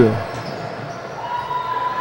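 Indoor futsal court ambience: the ball and the players' feet on the wooden floor, echoing in a large hall.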